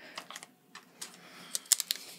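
Several pairs of hairdressing scissors being picked up and handled, giving a series of short, sharp clicks and clacks that are loudest near the end.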